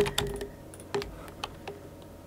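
A few scattered, irregular clicks of computer keyboard keys.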